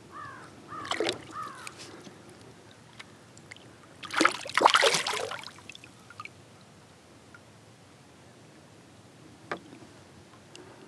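A smallmouth bass released by hand splashes back into the lake beside the kayak, giving a loud splash about four seconds in that lasts around a second. A few short bird calls come near the start, and a single knock sounds near the end.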